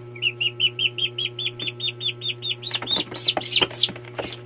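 Duckling peeping rapidly in distress, about six high peeps a second, while a python seizes and coils around it. Near the end the peeps become louder, longer cries that rise and fall in pitch.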